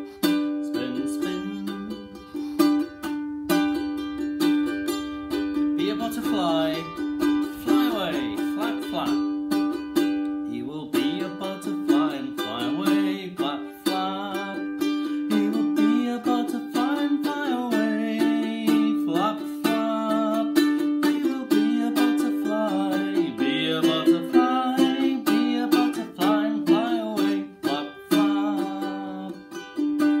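Ukulele strummed in a steady rhythm throughout, with a man's voice singing over it for stretches.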